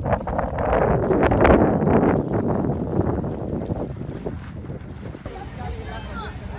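Wind buffeting the microphone: a rumbling rush that is loudest in the first half and eases off toward the end.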